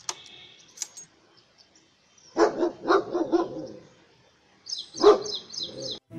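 A dog barking: a quick run of about four barks a couple of seconds in, then one more loud bark near the end.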